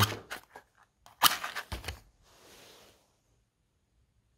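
A propanol spirit burner's wick being lit: a few small clicks, then a louder cluster of sharp clicks and scraping, then a brief soft hiss.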